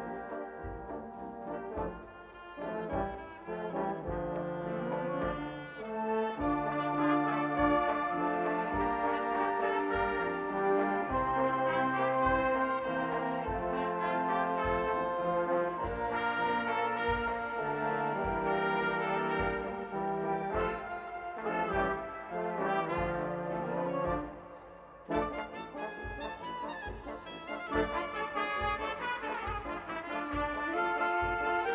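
A brass-led band of trumpets, trombones, French horns and tubas playing together: held chords over a moving tuba bass line. The music drops softer briefly about two seconds in and again near twenty-four seconds, then builds back up.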